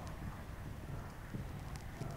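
Faint, soft hoofbeats of a dressage horse in collected canter on sand arena footing.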